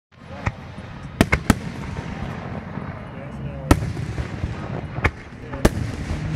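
Aerial fireworks shells bursting in a finale barrage: about seven sharp bangs, three in quick succession about a second in, over a continuous low rumble and crackle.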